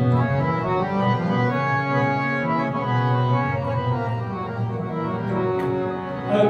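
Harmonium playing an instrumental passage of Sikh shabad kirtan without singing: a melody of sustained reedy notes, changing every fraction of a second.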